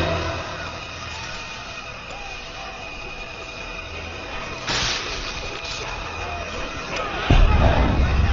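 Action-film soundtrack mix: score under street and crowd sounds, a brief sharp burst a little before five seconds in, then a loud low rumbling effect from about seven seconds in.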